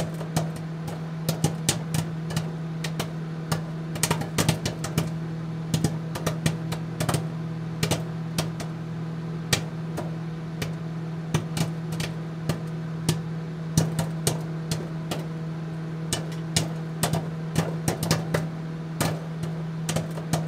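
A steady low hum with many irregular clicks and crackles scattered over it.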